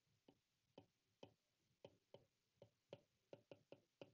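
Faint, irregular ticks of a stylus tip tapping on an iPad's glass screen as numbers are handwritten, about ten in four seconds.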